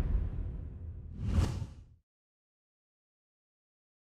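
Logo-animation sound effect: a deep whooshing rumble fading away, then a second, shorter swoosh about one and a half seconds in. The sound cuts off dead at about two seconds.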